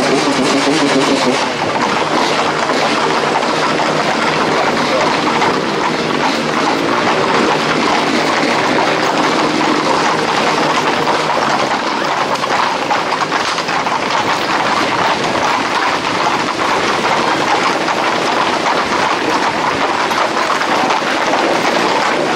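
Many Camargue horses' hooves clattering together on an asphalt road in a dense, steady clatter, with a crowd of people shouting and calling over it.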